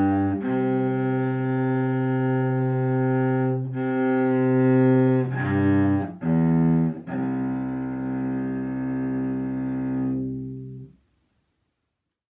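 Cello bowing the closing notes of a C major scale and arpeggio: a few held notes and shorter skipping notes, then a long final note that fades out about eleven seconds in.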